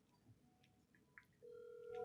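Near silence, then from about one and a half seconds in a faint steady tone: a phone's ringback tone as an outgoing call rings through.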